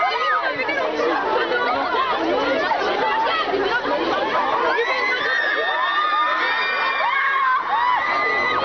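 Crowd of excited fans shouting and screaming over one another, with several long, high-pitched held screams in the second half.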